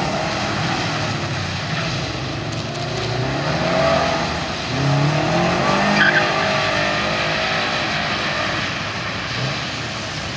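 Subaru Impreza WRX wagon's turbocharged flat-four engine revving up and down as the car slides on a wet skidpan, over the hiss of tyres and spray on the water-covered surface.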